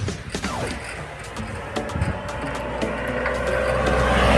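A bicycle creaking and clicking as it is ridden along a paved road.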